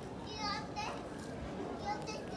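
A young child's high-pitched voice calling out in two short bursts about half a second in, with another call starting near the end, over the steady murmur of a crowded hall.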